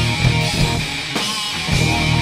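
Live rock band playing an instrumental passage, led by distorted electric guitar. The low end drops away for about a second and a half, then the full band comes back in near the end.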